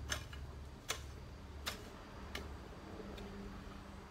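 Four sharp clicks, a little under a second apart, the last one fainter, over a steady low hum.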